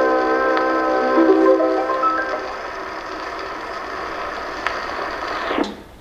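An Edison Diamond Disc phonograph plays the closing held chord of an acoustic 1914 recording, which fades out about two seconds in. After it comes the steady surface hiss of the stylus in the groove, with a few faint ticks. Near the end there is a short falling swish as the reproducer is lifted off the disc.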